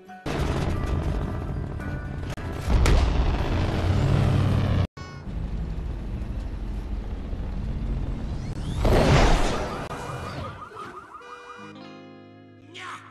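A cartoon car's engine rumbles loudly over film music. The sound surges about three seconds in, cuts out for an instant just before five seconds, and has a rushing whoosh around nine seconds before it fades.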